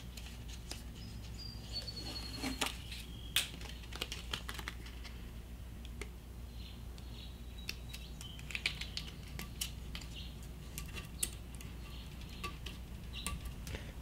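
Camco non-slip grip tape being peeled from its backing and pressed down onto a steel boat-trailer tongue: scattered light crackles, ticks and taps at an irregular pace.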